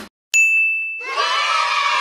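A single bright ding that rings out with a steady high tone and fades, followed about a second in by a crowd of voices shouting.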